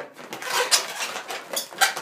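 Inflated latex twisting balloons rubbing and squeaking against each other as a red 260 hot-dog balloon is handled and tucked into a bun balloon: a few short rubs and squeaks, the loudest near the end.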